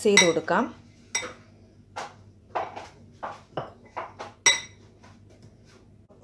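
Metal spoon stirring chopped orange peel in a glass bowl, tapping and clinking against the glass about eight times at uneven intervals. The loudest clink, about four and a half seconds in, rings briefly.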